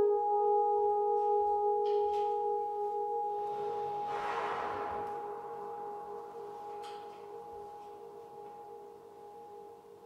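Electronically sustained, reverberant tail of a French horn note, one steady low tone fading slowly, as processing imitates a humpback whale's call echoing in a large bay. A breathy hiss swells and fades about halfway through, and there are two faint clicks, about two and seven seconds in.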